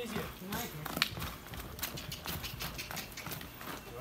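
Horse's hooves striking dry dirt again and again as it prances and stamps in place, a quick irregular run of thuds.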